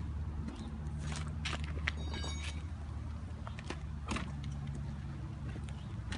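Steady low vehicle engine hum, with a few sharp knocks and a brief high squeak about two seconds in as the pipe threaded into a composite-body water meter is worked by hand in a pipe vise.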